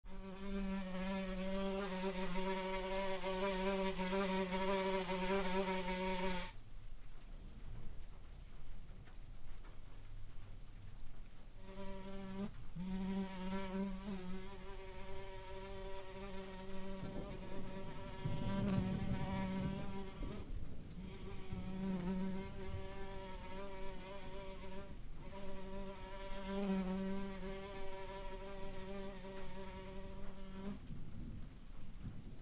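A fly buzzing in flight, a wavering drone with many overtones. It stops about six seconds in, stays silent for about five seconds, then buzzes again with a few short breaks.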